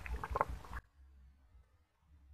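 Two cats eating close up from plastic tubs, one of them dry kibble: a few sharp clicks of chewing and lapping that cut off suddenly under a second in, leaving near silence.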